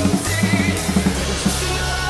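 An acoustic drum kit is played along to a rock song's backing track. A quick run of drum hits comes in the first half-second, then a steady beat, over sustained synth and guitar tones.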